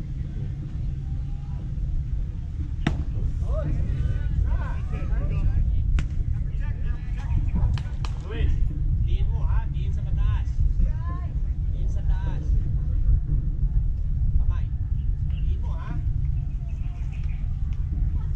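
Low rumble of wind buffeting the microphone, with distant voices calling out on the field and a few sharp clicks.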